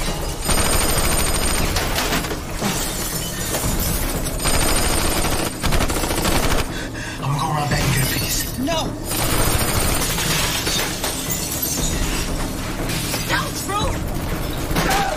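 Automatic gunfire with shattering glass in a TV drama shootout, in several long stretches that start and stop abruptly, with music underneath.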